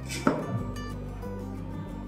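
A single sharp click about a quarter second in as a micro SD card is pushed into the card slot of a light-bulb IP camera, over steady background guitar music.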